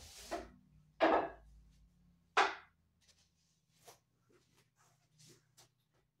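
Wooden cane striking a wooden wing chun dummy: a light knock at the start, then two sharp knocks about a second and a half apart, followed by a few faint taps.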